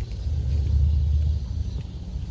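A low, fluctuating rumble that swells over the first second and a half and then eases.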